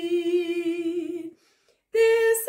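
A woman singing unaccompanied, holding one long note that breaks off about a second and a quarter in.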